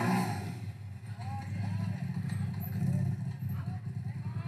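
Side-by-side UTV engine running low and steady as the machine crawls up a rock ledge, with faint voices of onlookers in the background.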